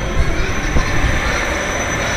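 Straddle-seat roller coaster train rolling slowly along its track into a tunnel, giving a steady rumbling running noise.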